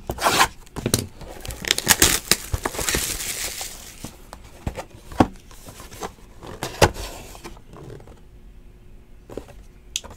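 Plastic shrink-wrap being torn and peeled off a cardboard trading-card hobby box: crinkling and tearing with many sharp clicks, heaviest in the first four seconds, then scattered clicks that die away after about seven seconds.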